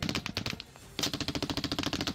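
Automatic gunfire in rapid bursts, with a short lull about half a second in before the firing resumes.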